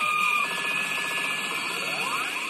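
Daiku no Gen-san pachinko machine's electronic sound effects: a buzzing texture under held high tones, with a tone that rises in pitch in the second half.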